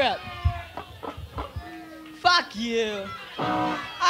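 Between-song noise at a live punk show on a raw bootleg tape: unintelligible shouted voices with a few stray, held guitar notes.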